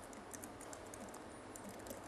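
Faint typing on a computer keyboard: a quick run of light keystrokes as shell commands are entered in a terminal.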